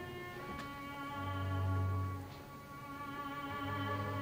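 Orchestral ballet music: bowed strings hold long sustained notes over a low bass note that swells up about a second in, fades, and comes back near the end.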